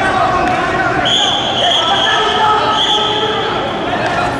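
Wrestling hall ambience with voices shouting across the room, and a whistle blown long and steady from about a second in to nearly the end, with a short break near the end.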